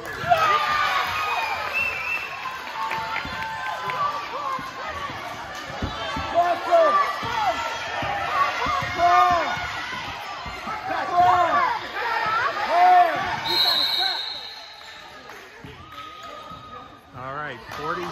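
Gym basketball game sounds: a crowd of voices shouting and cheering over the bounces of a dribbled basketball. About three-quarters of the way through comes a short, steady, high whistle blast, after which the noise drops for a few seconds.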